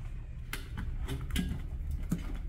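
Heavy multi-pin hose connector being pushed and seated into its socket on the back of a Sculpting body-toning machine: a few sharp plastic clicks and knocks, the clearest about half a second and just under a second and a half in, over a low steady hum.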